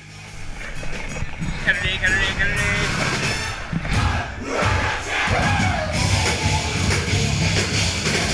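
Live ska-metal band with trumpet and trombone playing loud and heavy, swelling up over the first second or two. Crowd noise and yelled voices sound over the music.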